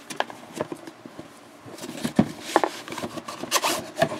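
Cardboard rubbing and scraping as a white card sleeve is slid off a Lamy pen gift box, with scattered light knocks and clicks of the box being handled.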